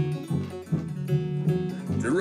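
Instrumental bars of a country-blues song: acoustic rhythm guitar strumming in a steady beat over washtub bass, with a slide diddley bow.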